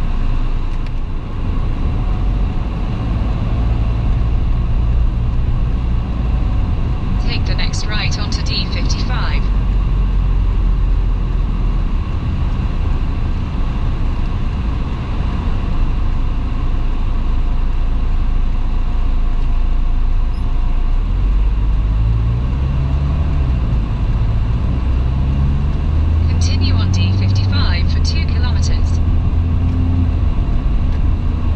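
Car cabin noise while driving: a steady rumble of engine and tyres, with the engine note rising and falling about two-thirds through as the car slows and pulls away. Short bursts of higher rattling come twice.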